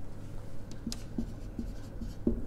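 Marker pen writing on a whiteboard: a series of faint, short strokes.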